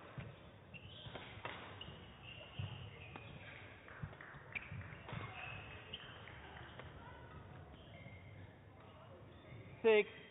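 Badminton rally: scattered sharp racket strikes on the shuttlecock and brief high squeaks of shoes on the court mat, ending with a player's loud shout on winning the point.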